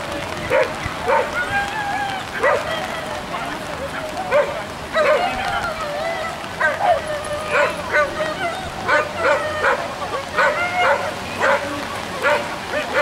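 A small dog barking in short, high yips, one to three a second throughout, with some longer whining notes between: the excited barking of a dog running an agility course.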